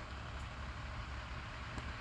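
Steady low rumble of motor vehicle noise, with no distinct events.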